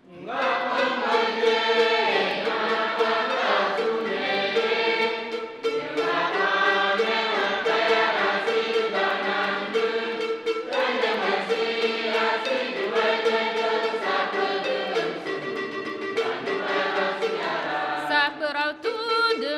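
A church choir singing a Catholic hymn in Ngambaye, many voices together in harmony. The choir comes in at full strength right at the start.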